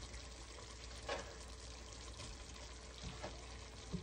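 Pork cooking in its own juices in a pot, a faint steady sizzle with fine crackling, and a few soft knocks as chopped onions are tipped in from a glass bowl.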